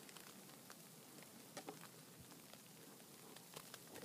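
Near silence, with a few faint soft ticks and crunches scattered through it: a Bernese Mountain Dog shifting and settling in deep snow.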